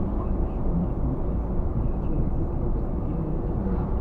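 Steady low rumble of a car driving at road speed, engine and tyre noise heard from inside the cabin.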